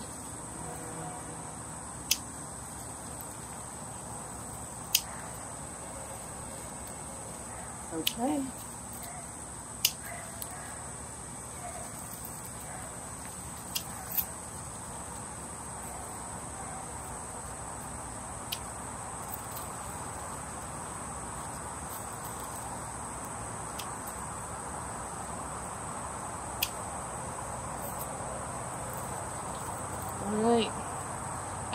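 Hand pruners snipping through zinnia stems: sharp single clicks every few seconds, about eight in all. Under them runs a steady high drone of insects.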